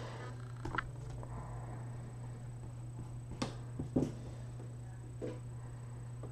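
A few short, light knocks and clicks of pencils and an eraser being handled on a desk: one about a second in, two close together past the middle, one more near the end. A steady low electrical hum runs under them.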